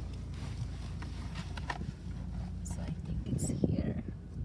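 Steady low rumble of a car cabin while driving slowly, with faint hushed voices and a few light taps and clicks near the end.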